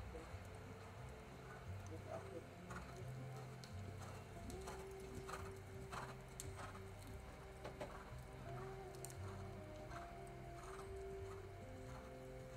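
Soft hoofbeats of a dressage horse trotting on the sand arena footing, roughly two a second, over background music with long held notes.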